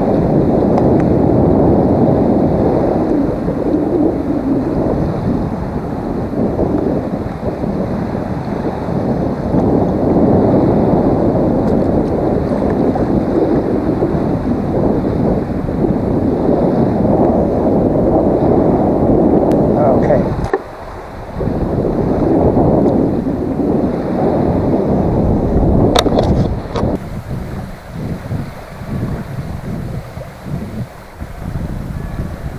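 Wind buffeting the microphone as a loud, steady rumble, with a brief lull about two-thirds of the way through and a couple of sharp clicks shortly after, easing into gustier, quieter rumbles near the end.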